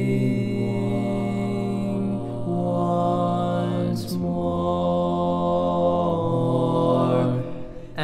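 A cappella four-part barbershop harmony sung by one male singer multitracked on all parts, holding long chords with no clear words and moving to a new chord every couple of seconds. There is a short hiss about four seconds in, and the sound thins out near the end.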